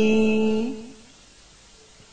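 A voice chanting Vietnamese verse holds the last syllable of a line on one long, steady note that dies away about a second in, followed by a quiet pause.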